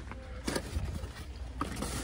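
Cardboard shipping cases of blister-carded die-cast cars being handled: a few short scrapes and clicks, about half a second in and again near the end, over a steady low store hum.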